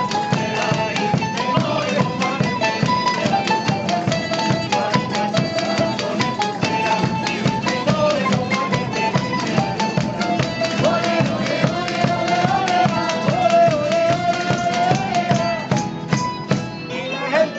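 A traditional Spanish folk band playing: strummed acoustic guitars and a lute-type plucked instrument over a steady drum beat, with a wavering melody line on top.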